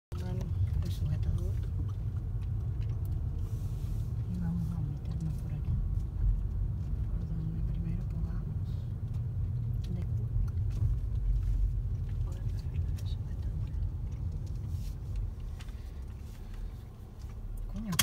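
Low, steady rumble of a car's engine and tyres heard from inside the cabin while it drives slowly, easing off a little near the end.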